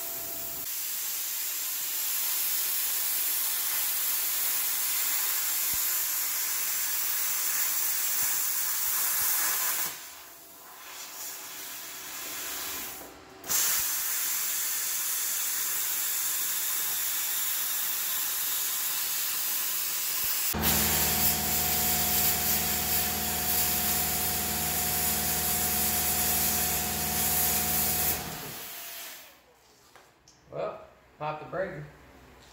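Pneumatic cut-off tool cutting through a steel car door panel, a steady high hiss with a short pause about a third of the way in. About two-thirds through, an air compressor starts running underneath with a low steady hum, and both stop shortly before the end.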